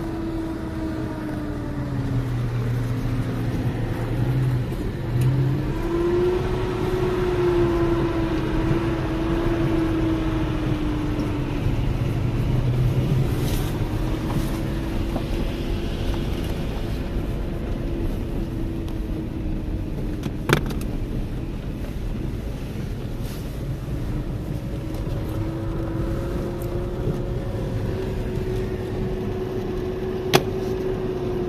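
Car engine running and tyres rolling over a dirt track, heard from inside the cabin; the engine note rises and falls gently with the throttle. A single sharp click sounds about two-thirds of the way through.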